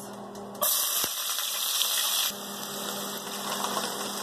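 Diced onions hitting hot oil in a pot and sizzling: a loud hiss starts suddenly about half a second in, then after about two seconds settles to a quieter, steady sizzle.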